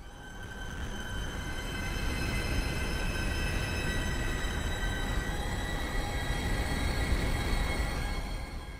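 Arturia Pigments software synth playing a granular, sample-based atmosphere patch. It gives a dense drone of rumbling low noise under several steady high ringing tones. It swells in over the first couple of seconds, shifts one of its tones to a lower pitch about halfway through, and fades near the end.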